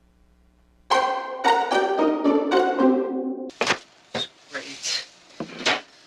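Film soundtrack: about two and a half seconds of held musical notes, then several sharp knocks and clatters of objects being handled at an open refrigerator.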